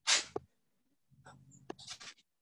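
A person's short, breathy huff of laughter, sharp at the start, with fainter breathy sounds near the end.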